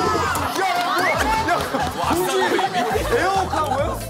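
Many voices chattering and reacting over one another at once. A low background music bed comes in near the end.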